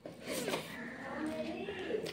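Close-up mouth sounds of a person eating rice and curry by hand: a mouthful taken in with a sudden start, then chewing with crackly, irregular noises.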